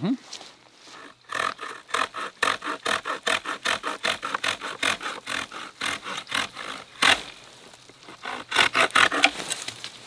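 Small folding pruning saw cutting a green hazel stem by hand, in quick back-and-forth rasping strokes of about four a second that slow near the end as the cut finishes. The saw bites well into the wood.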